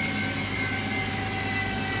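Pratt & Whitney JT8D turbofan on a 737-200 winding down after being dry-motored by starter air without fuel: a high whine slowly falling in pitch as the engine's RPM drops, over a steady hum.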